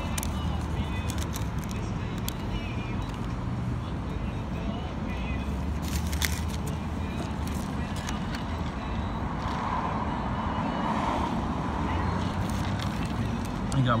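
Outdoor street ambience: a steady low rumble of road traffic with faint distant voices, and a few short clicks about six seconds in.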